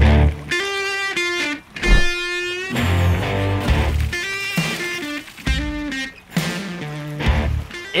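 Background music led by electric guitar, with held notes over a deep bass.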